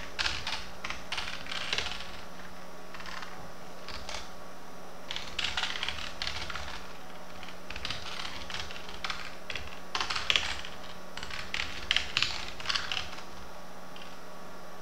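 Computer keyboard being typed on in irregular bursts of key clicks with short pauses between, as a line of code and a comment are entered. A steady low hum runs underneath.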